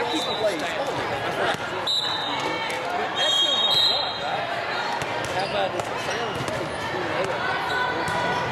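Busy volleyball-hall din: many overlapping voices of players and spectators, with scattered thuds of volleyballs being hit and bounced and a few short, high sneaker squeaks on the court floor.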